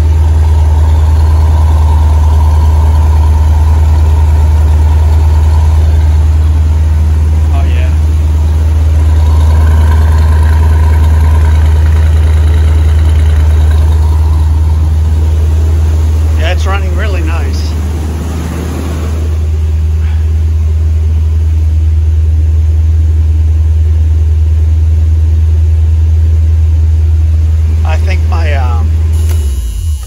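Chevy 350 V8 of a 1976 Corvette idling steadily on freshly installed spark plugs, then shut off just before the end.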